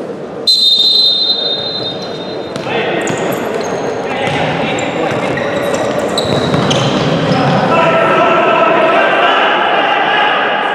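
A referee's whistle blows for about two seconds, starting half a second in, as a futsal match restarts from the centre. Then the ball is kicked and bounces on the hard floor of an echoing sports hall, under players' shouts.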